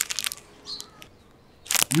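A few short crinkling crackles, then a quiet pause; a man's voice starts near the end.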